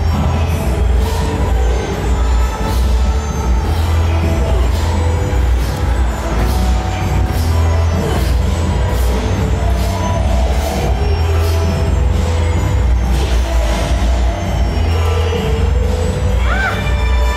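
Background music with a heavy bass line and a steady beat.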